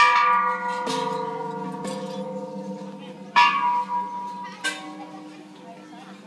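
A row of hanging metal Thai temple bells struck by hand, four strikes in all, each ringing on in long overlapping tones that slowly fade. The pitches shift between strikes as different bells in the row are hit, and the first strike and the one about three and a half seconds in are the loudest.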